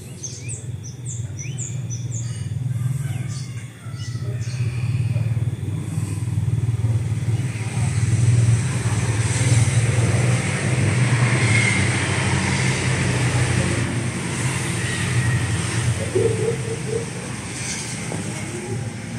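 A motor vehicle engine running steadily, growing louder over the first few seconds and easing off near the end, with short bird chirps in the first couple of seconds.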